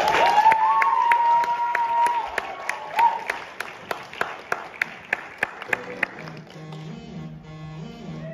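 Audience applause with a long, high cheer, thinning out after about two seconds into a run of evenly spaced sharp clicks, about three a second. Recorded Bollywood dance music then starts quietly near the end, with a stepping low bass line.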